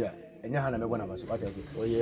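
A man speaking, after a short pause about half a second long at the start.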